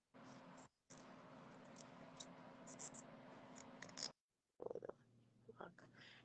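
Near silence: faint background hiss with a steady low hum and a few faint clicks, cut by brief moments of complete silence where the audio drops out.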